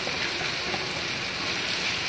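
Tomato, onion and garlic masala sizzling in oil in a steel pan as yogurt is poured in, a steady even hiss.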